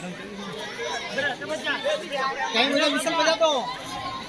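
Indistinct chatter of several voices talking and calling out at once, no clear words.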